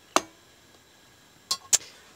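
A metal spoon clinking against a stainless steel soup pot: one sharp clink with a short ring near the start, then two quick clicks near the end.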